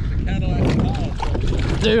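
Wind rumbling steadily on the microphone, with water sloshing and a plastic fishing kayak's hull moving along a gravel shore as the kayak is launched.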